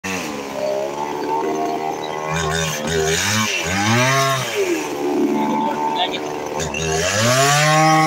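Gasoline chainsaw running, its engine revved up and let back down twice, a rising then falling pitch each time.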